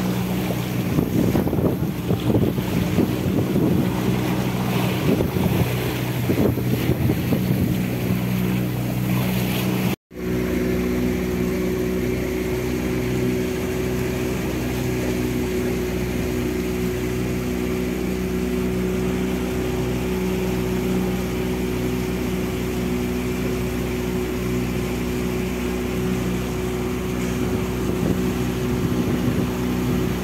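Motorboat engine running at a steady cruising speed, a constant low hum with water rushing and splashing along the hull and wind on the microphone in the first third. After a very brief break about ten seconds in, the engine hum carries on steadily with less water noise.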